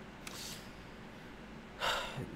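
A man's breathing close to the microphone: a faint breath about a third of a second in, then a sharp, louder intake of breath near the end.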